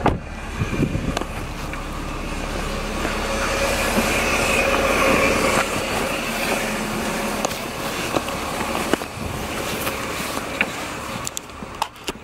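A taxi's car engine running close by, steady, with scattered small clicks and rustles from the handheld phone.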